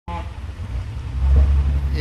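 Low, steady rumble of an idling vehicle engine, swelling a little about a second in, with a brief snatch of voice at the very start.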